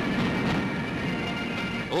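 Massed pipe band playing: bagpipes over a dense roll of side drums, heard as a thick, worn old newsreel recording.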